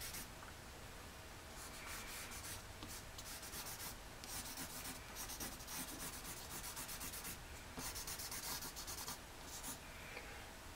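Pencil shading on paper: quick back-and-forth strokes scratching in short spells with brief pauses between. The pencil is dull, long unsharpened.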